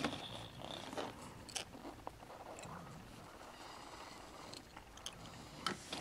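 Faint scattered clicks and scrapes of small plastic toy pieces being handled on carpet.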